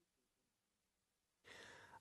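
Near silence: faint room tone, with background hiss rising slightly near the end.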